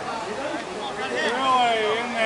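Distant shouting of players across a softball field during a live play, with one long drawn-out yell that falls in pitch in the second half.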